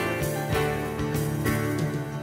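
Instrumental passage of a contemporary worship song, played by a band with guitar over a steady beat.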